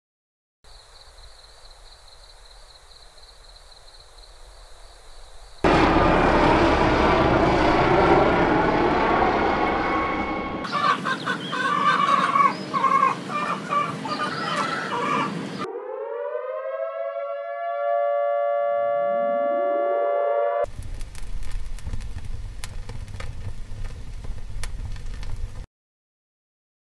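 Five short environmental noise samples played one after another, about five seconds each: crickets chirping in a steady high pulsing trill, a loud airplane, a bird calling, a siren wailing up in pitch and holding, and a fire crackling. The airplane is the loudest.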